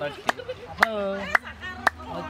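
Hand claps keeping a steady beat of about two a second, under a voice singing a simple chant-like song.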